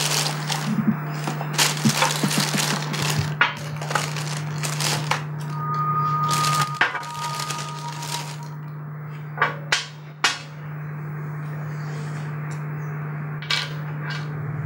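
A plastic carrier bag rustling and crinkling with sharp crackles as things are taken out of it by hand, with a few sharp knocks of small items set down on a glass tabletop, over a steady low hum.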